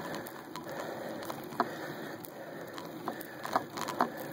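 Steady noise of a bicycle climbing slowly up a steep asphalt grade, picked up by a phone microphone mounted on the handlebars, with a few sharp knocks: a spare battery dangling from the handlebars bumping. One knock comes a little over halfway through and three more close together near the end.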